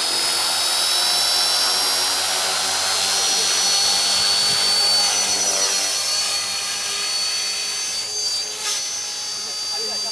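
Radio-controlled model helicopter spooling up and lifting off: a high motor-and-rotor whine that rises in pitch over the first few seconds, then holds steady as it hovers and flies off.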